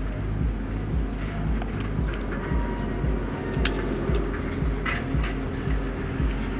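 Steady low engine rumble, with a few light clicks and knocks scattered through it.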